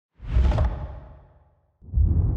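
Sound-effect whooshes for an animated intro: a deep whoosh swells quickly and fades away over about a second, then a second deep whoosh starts near the end.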